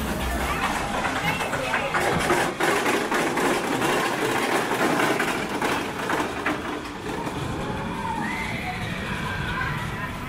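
Small family roller coaster train rattling and clicking as it runs out of the station and up its lift hill, the clatter easing about seven seconds in. Voices of riders and onlookers mix in, with a voice calling out near the end.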